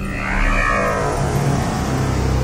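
Logo sting: electronic music with an engine-rev sound effect, a brief swell about half a second in, settling into a held low drone.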